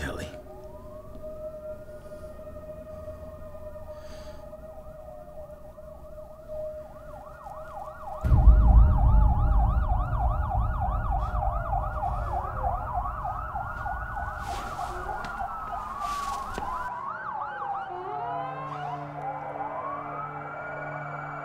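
Several police sirens wailing and overlapping, their sweeps growing denser. About eight seconds in, a loud deep rumble comes in under them and cuts off a few seconds before the end, when steady low tones take over.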